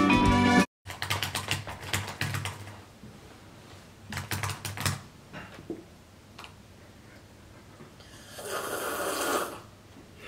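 A short tail of music cuts off, then laptop keyboard typing, clusters of sharp clicks. About eight seconds in, one loud, drawn-out slurping sip from a mug, lasting about a second and a half.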